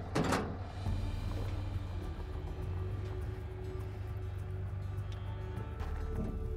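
A pickup truck's metal rear gate clanks shut once at the very start. It is followed by background music over a steady low rumble.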